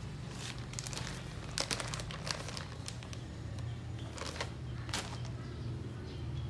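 A thin plastic bag crinkling in short, irregular bursts as a hand rummages in it for cotton swabs.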